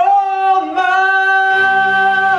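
A solo stage singer holding one long sustained note, with a brief slide about three-quarters of a second in. Low musical accompaniment joins underneath about one and a half seconds in.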